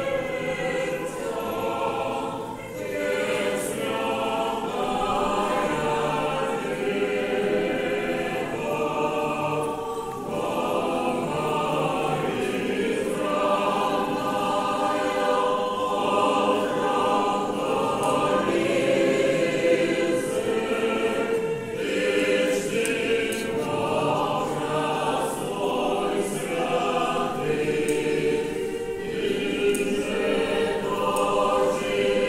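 A choir of voices singing an Orthodox hymn of praise to the Mother of God, unaccompanied and in chords, with short pauses between phrases.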